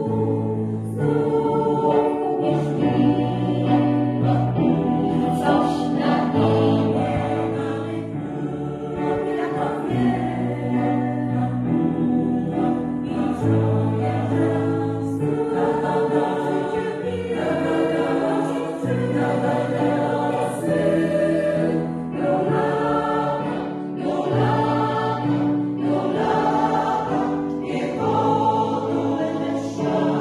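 Mixed choir of women's and men's voices singing in parts, moving through long held chords over a low bass line.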